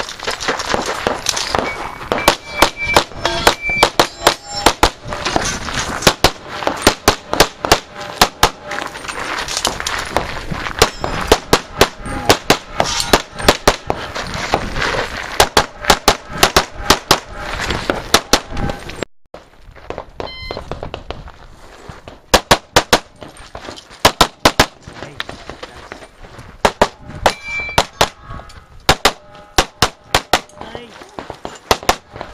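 Handgun fire at close range: dozens of sharp pistol shots in quick succession, many in rapid pairs of two shots on each target. The firing breaks off briefly about two-thirds of the way in, then resumes in pairs.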